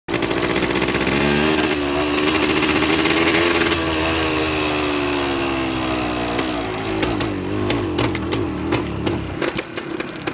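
1978 Yamaha DT 125 MX's single-cylinder two-stroke engine, ridden under load: it revs up about a second in, holds, then its pitch sags slowly. From about seven seconds in it runs unevenly with sharp irregular pops, the rough running it shows with the choke off, which adjusting the carburettor's air/fuel screws has not cured.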